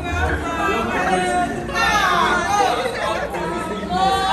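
Excited overlapping chatter of greeters' voices calling out in welcome, with one long exclamation falling in pitch about halfway through.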